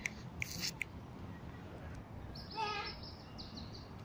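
Quiet outdoor background with a few faint high chirps about half a second in and one brief high-pitched call that bends in pitch a little past halfway.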